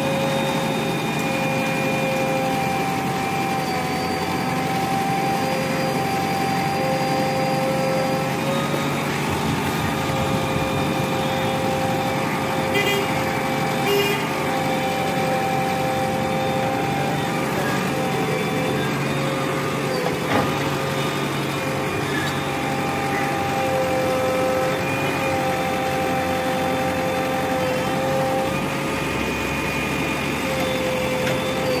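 JCB 3DX backhoe loader's diesel engine running steadily while the backhoe arm works the garbage heap, its pitch wavering slightly with the load. A few short knocks sound around the middle.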